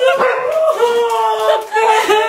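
Women's high-pitched excited squealing and crying voices during a surprise reunion hug: long held shrieks, one after another, with small slides in pitch.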